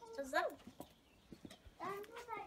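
A young girl's voice: a short spoken word, then a lull with a few faint clicks, and voices starting again near the end.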